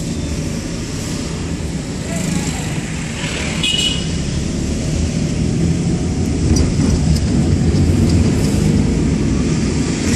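Car engine and road noise heard inside the cabin while driving, a steady low rumble that grows a little louder in the second half. A brief high-pitched sound cuts through it about three and a half seconds in.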